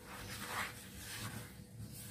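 Spatula stirring dry rice flour and sugar in a plastic bowl: a faint, soft scratchy rustle that swells and fades with the strokes.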